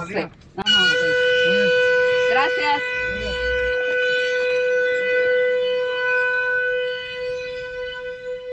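Salt works' factory whistle blowing one long, steady, loud note that starts just under a second in: the whistle that signals the workers' lunch break.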